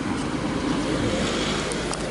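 Steady road-traffic noise, a motor vehicle going by, with faint voices in the background.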